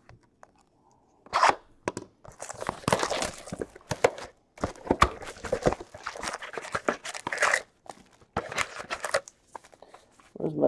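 A cardboard hobby box of Panini Chronicles baseball card packs being opened and emptied by hand, with tearing, crunching and crinkling of cardboard and wrapped packs as they are pulled out and stacked. It comes in scratchy bursts with short pauses, starting about a second in.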